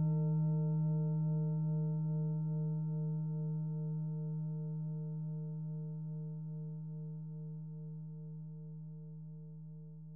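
A singing bowl's long ringing tone, slowly fading away with no new strike. One of its overtones wavers in a steady pulse.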